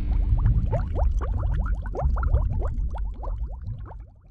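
Bubbling, liquid-like sound effect: many quick rising chirps over a low rumble, thinning out and fading away near the end.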